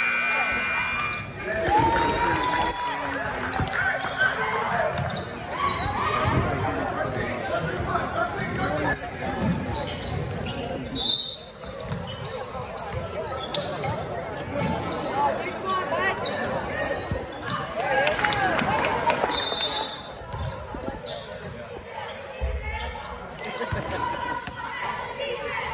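Youth basketball game echoing in a gym: the ball bouncing on the hardwood floor, with players and spectators calling out. Short high whistle blasts come about halfway through and again near the end.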